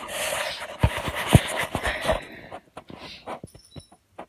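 Rustling and bumping handling noise from a phone being moved about, with a few dull thumps in the first two seconds, then a handful of faint clicks.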